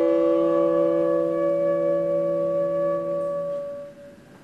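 Two saxophones, a tenor and a second sax, holding long steady notes together in a free jazz duet. The tones hold the same pitch, then fade out near the end.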